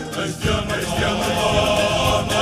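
Cape Malay choir and string band performing a comic song. A held choral note fades out and, about half a second in, the band comes back in with a beat while the male voices sing on.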